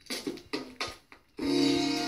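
A 7-inch vinyl single playing on a turntable, the opening of a soul record. There are four sharp percussive hits, then about one and a half seconds in the full band comes in with sustained chords.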